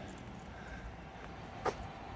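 Electric swing-arm gate opener's actuator running, pushing a chain link gate open: a faint steady whir. One short click comes near the end.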